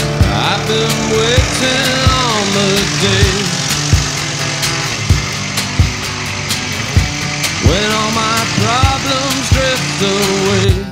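Background music with a steady drum beat and a melody of sliding, gliding notes.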